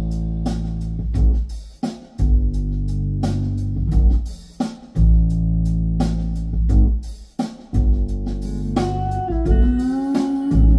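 A recorded song played through hi-fi loudspeakers in a room: its intro, with prominent bass guitar notes, guitar and drum hits, and a bending melodic line entering near the end.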